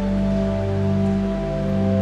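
Pipe organ holding steady sustained chords, changing to a new chord right at the start.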